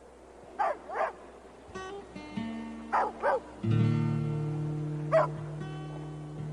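A dog barks five times: twice about a second in, twice about three seconds in, and once just after five seconds. Meanwhile a guitar picks a few single notes and then strikes a chord, about four seconds in, that keeps ringing.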